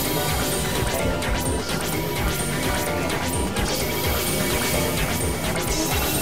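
Experimental noise music played on hardware synthesizers (Korg Supernova II and microKorg XL): dense layered drones held at a steady loudness, with harsh crashing noise streaked through them.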